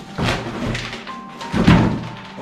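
Background music, with a large cardboard toy box being handled and turned over: two dull thunks with scraping, the louder one near the end.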